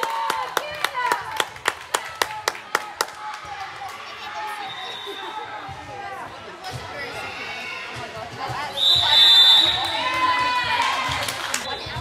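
A quick run of sharp hand claps, about four a second, for the first three seconds, with shoe squeaks on a hardwood gym floor. Then players' and spectators' voices and brief cheers echo in a large sports hall, loudest about nine seconds in.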